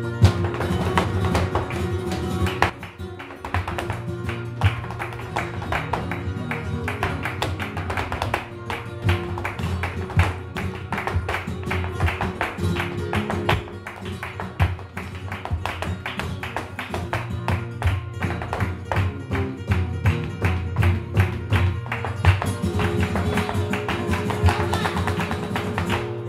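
Live flamenco played on two acoustic flamenco guitars, strummed and picked, over a dense run of sharp percussive strikes from hand clapping and a dancer's footwork.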